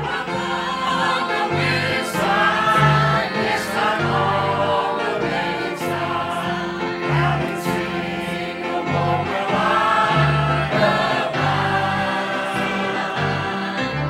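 Mixed church choir of men and women singing a hymn together.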